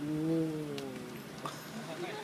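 A person's drawn-out vocal exclamation, a long 'oooh' sliding slowly down in pitch for about a second, followed by a couple of faint clicks.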